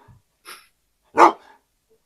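A dog barking in single sharp barks about a second apart, the clearest a little over a second in.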